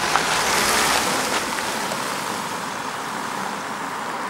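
Steady outdoor rushing noise, a hiss without pitched tones or much low rumble, easing a little over the seconds.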